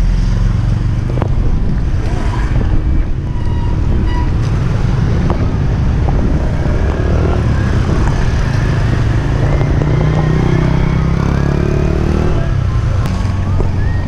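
Steady low rumble of freeline skate wheels rolling over street asphalt, mixed with passing motorbike and car traffic.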